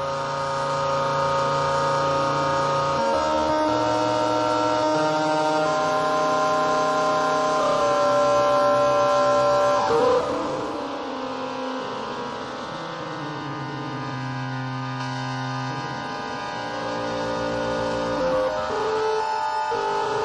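Atonal electronic music: dense clusters of sustained tones sounding together, their pitches shifting in steps every second or two. About halfway through there is a brief sharp burst, then the texture thins and grows quieter before building again near the end.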